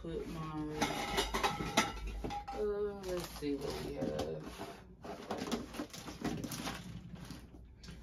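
Plastic bags crinkling and small plastic containers and caps clicking together as they are handled and sorted, with a voice heard faintly in parts.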